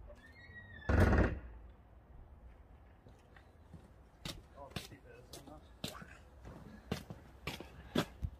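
A single heavy thunk about a second in, from the boot lid of a Rover P6 being opened, followed by scattered light clicks and knocks.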